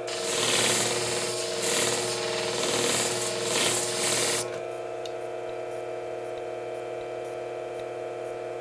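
Steel blade of a Bonika Ocean shear ground against the spinning plate of a flat-hone sharpening machine, a rough rubbing noise that swells and eases with each pass as the convex edge is worked at 55 degrees to raise a burr. The grinding stops suddenly about four and a half seconds in when the blade is lifted off, leaving the machine's steady motor hum.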